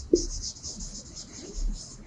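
Marker pen writing on a whiteboard: a rapid run of short, scratchy strokes as a word is written out.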